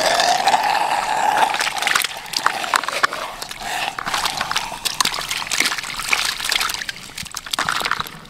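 Muddy water and live fish pouring from the mouth of a PVC pipe fish trap into a plastic basin of water, splashing and sloshing with many quick splatters, loudest in the first few seconds and easing off near the end.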